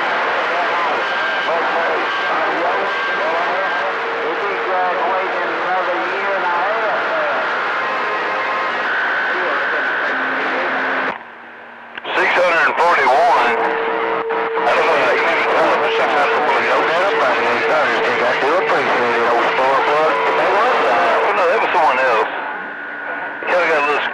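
CB radio receiver audio on channel 28: garbled, hard-to-make-out voices of distant stations coming through a hiss of static, with steady whistle tones over them. The signal drops out for about a second halfway through, then comes back.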